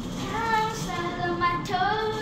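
A child's voice singing a slow melody with long held notes that glide from one pitch to the next.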